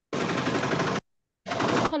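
Harsh rattling static on a video-call audio line. It stops dead about a second in and starts again about half a second later.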